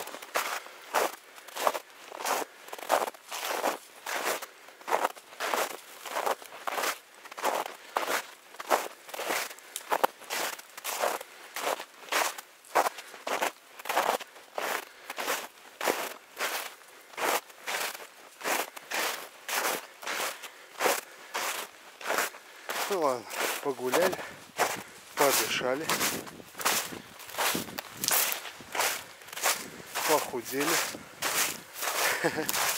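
Footsteps crunching in shallow snow at a steady walking pace, about two steps a second.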